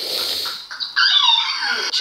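A short burst of noise, then a drawn-out cry that slides down in pitch, like a whine or howl.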